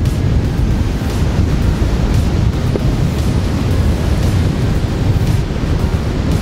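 Wind buffeting the microphone over surf breaking on the rocks: a steady, loud low rumble.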